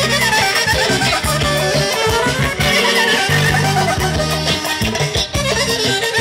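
Balkan wedding band playing fast folk dance music: a lead instrument runs quick melodic lines over a repeating bass and steady beat.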